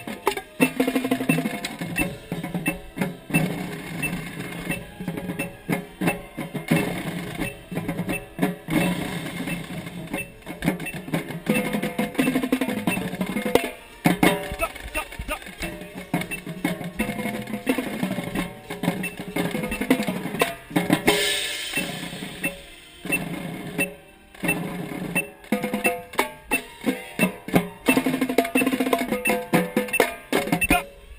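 Marching tenor drums (quads) played up close in fast, rhythmic runs of strokes across the drums, with the rest of the drumline behind. There is a short crash about two-thirds of the way through.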